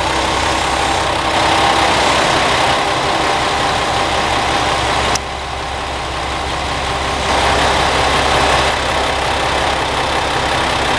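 Diesel railcar engines idling, a steady rumble with a faint hum, heard close beside the train. The level drops suddenly about five seconds in and swells back up around seven seconds.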